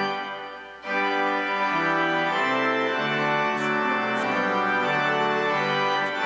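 Church organ playing a hymn in sustained chords: a held chord is released and dies away, and the organ comes back in under a second in with chords moving beneath a melody.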